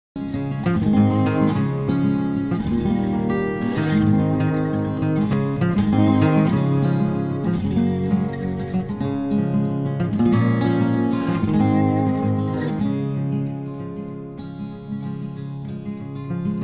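Background music led by acoustic guitar, with plucked notes and strums, easing off a little near the end.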